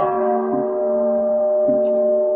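A Buddhist bowl bell struck once, ringing on with several steady tones. Soft regular knocks come about once a second beneath it.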